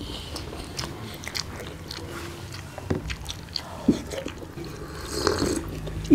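Two people eating rice and broccoli-potato curry by hand: chewing and wet mouth smacks, heard as scattered short clicks throughout.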